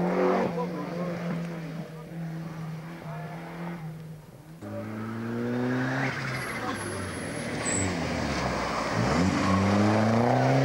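Rally car engines on a special stage at speed. One car's engine note changes pitch as it shifts and fades away in the first seconds. A second car's engine comes in suddenly about halfway with a rising note, and another car's revs climb as it arrives near the end. Spectators' voices can be heard.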